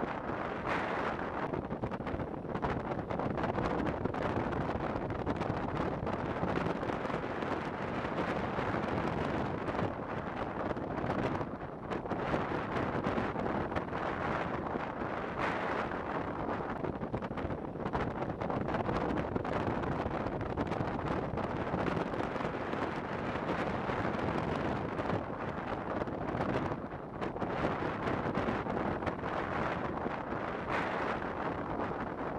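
Strong wind buffeting the microphone: a steady rushing roar, easing briefly about twelve seconds in and again near the end.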